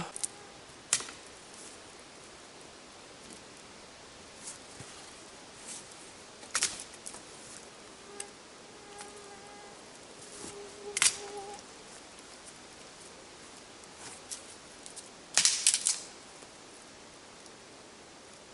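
Scattered sharp knocks and snaps of wood being worked and handled, a few seconds apart, with a short clattering cluster near the end. About halfway through, a faint steady buzzing tone comes in for a few seconds.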